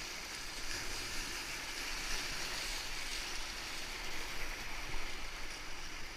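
Whitewater rapids rushing and splashing around a kayak as it runs through them, a steady hiss of broken water heard close from the boat.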